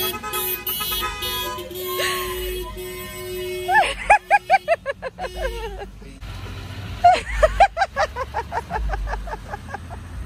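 Car horns honking from a line of cars rolling slowly past, with long held blasts through the first few seconds. Two runs of rapid short hoots follow, about five a second, one a little before halfway and another about seven seconds in.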